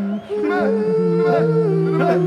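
Live rock band music: a man sings long, howl-like held notes into a handheld microphone that step down in pitch, over a swooping figure that repeats about every 0.7 seconds.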